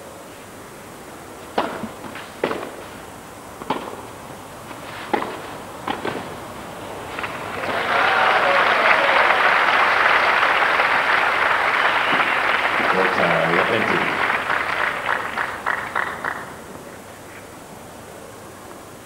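A tennis rally on clay: six strikes of racket on ball, about a second apart. Then a crowd applauds with a few shouts for about eight seconds, thinning to scattered claps before it stops.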